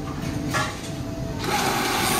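Automatic cash-payment machine starting to dispense change: about a second and a half in, its bill-and-coin mechanism starts running with a dense mechanical whirring and clatter that grows louder.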